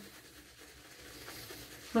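Faint, soft rubbing of a shaving brush scrubbing thick lather over the face.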